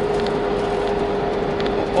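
Steady road noise inside a moving car, with a constant hum running under it.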